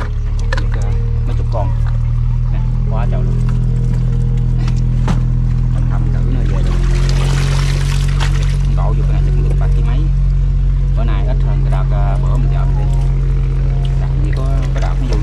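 Low, steady engine drone, as from a boat motor running on the water, with a splash of water about seven to eight seconds in as fish are emptied from the jug trap into a net bag.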